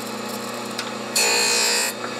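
Surface grinder running, its abrasive wheel grinding the hardened steel of old hand files as the table carries them back and forth. The motor's steady hum is joined about a second in by a louder, hissing grind as the wheel bites into the file, which stops just before the end.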